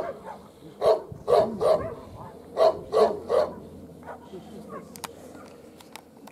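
A dog barking in a quick series of about seven short barks over the first three and a half seconds, then falling quiet.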